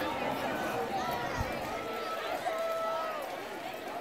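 Indistinct chatter of several people's voices, no clear words, over steady outdoor background noise.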